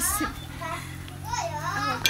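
Background voices of children and adults talking and calling out, in short high-pitched snatches.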